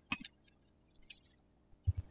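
Small metal clicks of a hex key working the bleed port screw on a hydraulic brake lever, the sharpest just after the start and a few fainter ticks about a second in, with a soft low thump near the end.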